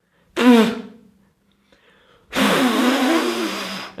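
A person blowing at a birthday-cake candle that is slow to go out: a short voiced puff about a third of a second in, then a long, hard blow of about a second and a half starting just past two seconds.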